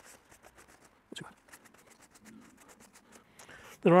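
Paper towel wiping along a bypass secateur blade to clean the sap off, a faint rustling and light scraping with small ticks, and one sharper click about a second in.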